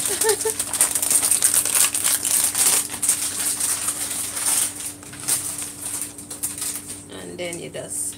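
Spatula stirring thick cornmeal and pumpkin porridge in a stainless steel pot: a dense run of quick scrapes and clicks that thins out after about five seconds.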